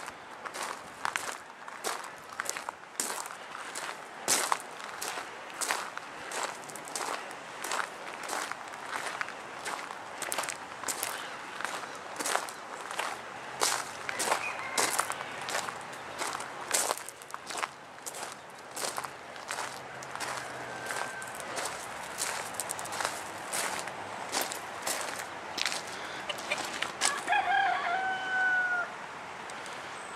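Footsteps on a gravel track at a walking pace, about two steps a second. Near the end a rooster crows once, the call falling in pitch at its close, and the steps stop.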